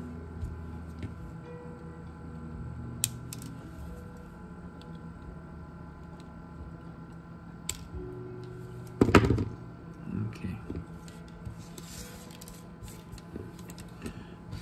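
Small tools and a circuit board being handled on a workbench: a few sharp clicks, and one louder knock about nine seconds in, over a faint steady hum.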